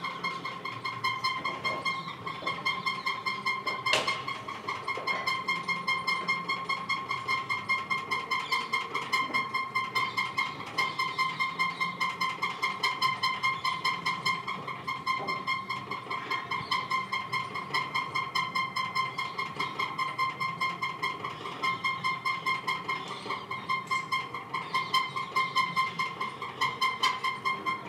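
A continuous high-pitched drone that throbs evenly about three times a second throughout, over faint ambient noise, with one sharp click about four seconds in.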